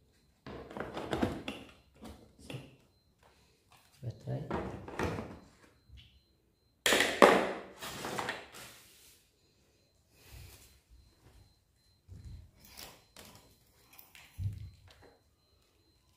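Hard plastic carrying case being packed: knocks and clatters as a cordless spray gun and its batteries are set into their moulded slots, the loudest clatter coming about seven seconds in.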